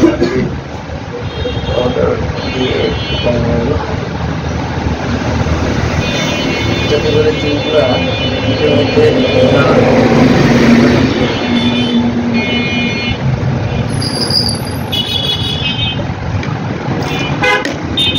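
Road traffic with vehicle horns sounding again and again: several short toots, and a longer one about six seconds in that lasts some three seconds. Voices mix in under the traffic.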